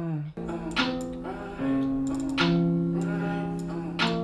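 A melodic beat loop of plucked, guitar-like notes starts playing about half a second in, each note struck sharply and ringing on under the next.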